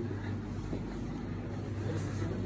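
Steady low mechanical hum with no distinct events.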